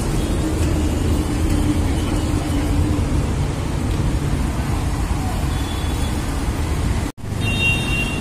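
Steady low rumble of road traffic, with faint engine tones in it. The sound drops out for an instant about seven seconds in, where the recording is cut.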